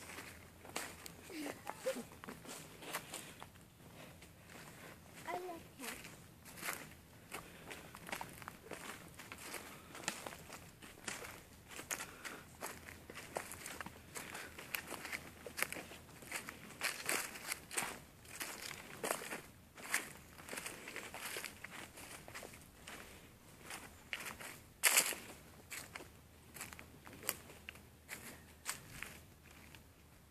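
Footsteps crunching and rustling through dry fallen leaves and twigs, an irregular walking rhythm, with one louder sharp crack about twenty-five seconds in.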